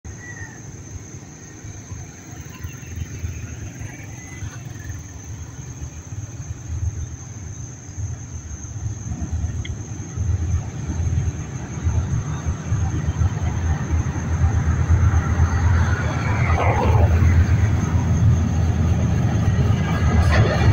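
Diesel-hauled passenger train approaching the steel truss bridge: a low rumble that grows steadily louder as it nears.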